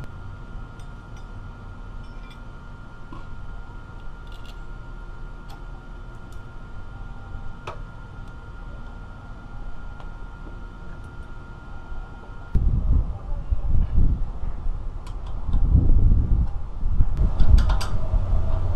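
Steady low background hum with a few light clicks of small parts and tools being handled at a motorcycle engine. About two-thirds of the way in, a louder, uneven low rumble takes over, swelling and fading.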